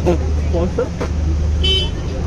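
Men's voices calling out over a steady low engine hum, with a short high-pitched toot near the end.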